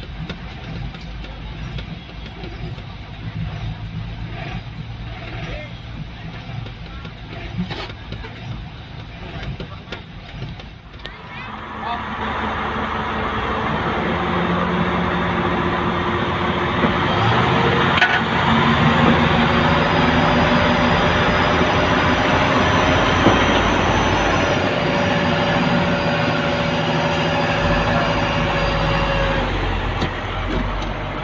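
Garbage truck's diesel engine running at low idle, then from about twelve seconds in running much louder with a steady high whine and held tones as it drives the hydraulic arm that lifts and tips its skip container.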